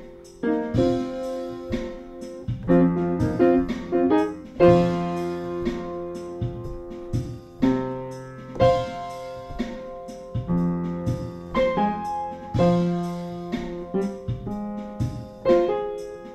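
Upright piano playing an instrumental blues passage between sung verses: chords struck about once a second or so, ringing on over a bass line.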